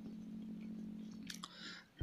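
A man's voice holding a low, steady hum for about a second and a half, trailing on from a spoken word, then a short scratchy sound near the end.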